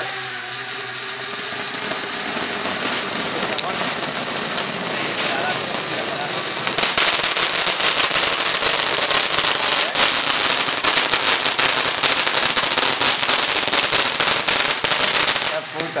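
Pyrotechnic fountain mounted on a small quadcopter drone: a steady hiss with a few pops for the first several seconds. From about seven seconds in it turns into a loud, dense crackling spray of sparks, which cuts off abruptly just before the end.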